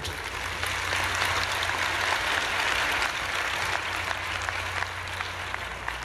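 A large audience applauding, a dense steady clapping that eases off slightly toward the end.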